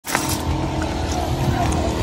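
Outdoor car-park ambience: a low steady rumble with distant voices in the background.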